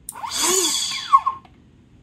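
Electric ducted fan on a single-cell (1S) battery spinning up for about a second and a half, an airy rush with a whine that rises then falls, blowing a Nerf Mega XL foam dart out of its barrel. A sharp knock comes about a second in.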